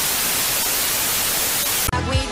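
Steady hiss of TV-style white-noise static used as a transition sound effect, cutting off suddenly just before the end.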